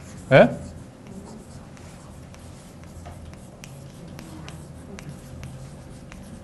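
Chalk writing on a blackboard: a run of short, irregular taps and scrapes as a word is written out.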